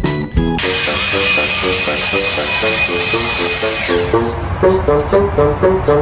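Background music with a bouncing, plucked rhythm. About half a second in, a loud hiss with a steady high whistle joins it, and the whistle slides down and fades out about four seconds in.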